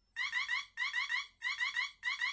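Psion Organiser II LZ's buzzer sounding its countdown-timer alarm as the timer reaches zero: a repeating electronic beep pattern, three bursts about half a second apart, each a quick run of rising chirps.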